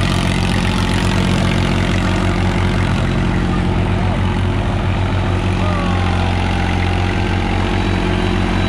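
Massey Ferguson 9000 tractor's diesel engine running steadily with a low, even chugging beat as the tractor spins in place, its rear tyre churning a pit in loose soil.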